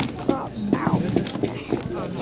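A plastic action figure tapped and knocked against a hard countertop several times as it is made to walk, with a child's voice over it.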